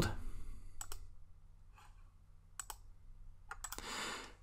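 A few faint, isolated computer mouse clicks, spaced about a second apart, over a low steady hum.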